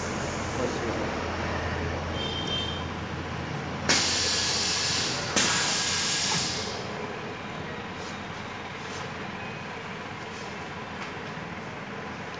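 Compressed air hissing from the pneumatic clamps of a uPVC profile corner-welding machine: two sudden bursts of hiss, about four and five and a half seconds in, each lasting a second or so, over a low steady machine hum.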